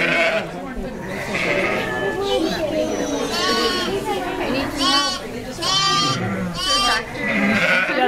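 Newborn lamb bleating: four short, high-pitched bleats in the second half, each rising and falling.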